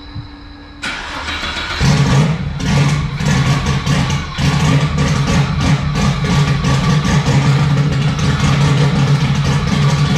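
Turbocharged Ecotec V6 car engine being started: a brief whine, then the starter cranks from about a second in, and the engine catches just under two seconds in and keeps running at a loud, steady idle.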